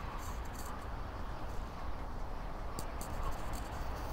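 Steady outdoor background noise: a low rumble with a soft hiss above it, with no distinct event standing out.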